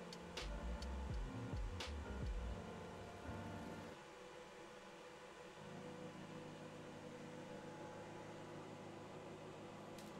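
Handling noise: low thumps and a few sharp clicks over the first two and a half seconds, then a faint steady hum.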